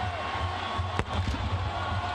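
Stadium ambience at the end of a football game: music plays under a general crowd noise, with one sharp knock about a second in.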